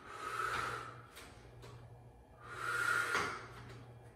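A woman breathing hard from exertion, with two forceful breaths about two and a half seconds apart. It is huffing and puffing while holding a plank and lifting a leg.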